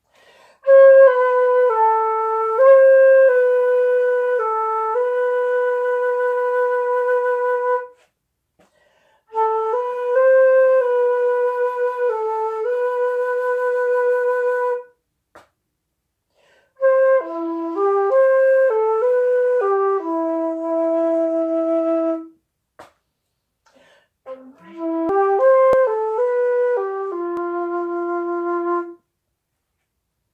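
Concert flute played solo: four short melodic phrases separated by brief pauses, each ending on a long held note.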